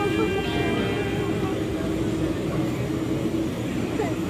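Busy shop-floor ambience: a steady low hum with indistinct distant voices and faint music.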